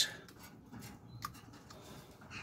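Faint light ticks and scrapes of a carving knife taking very fine, wafer-thin slivers off a fresh green-wood stick.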